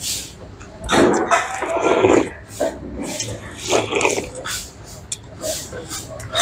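Close-up eating sounds of a man chewing and smacking on a mouthful of broken rice and grilled pork, in irregular bursts with short wet clicks. There are louder, mumble-like stretches about a second in and again around four seconds in.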